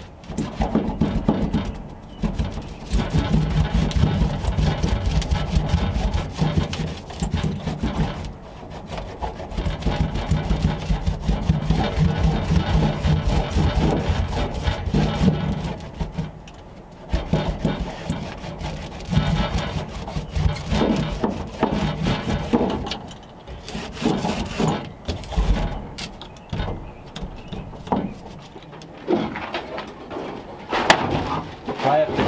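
A hand roller rubbing over self-adhesive sound-deadening mat on a car's steel floor pan, in repeated strokes, with steady background music.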